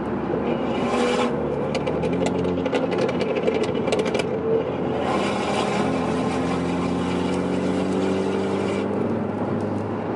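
Car engines running at road speed, heard from inside a following car. A burst of sharp crackles and pops from the BMW 340i's tuned exhaust, popping on overrun, runs from about one to four seconds in. The engine pitch steps about two seconds in.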